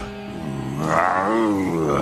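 A cartoon dog's long angry roar, voiced by an actor, rising and then falling in pitch, over background music.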